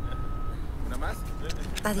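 A vehicle engine running with a steady low rumble, with a brief word spoken near the end.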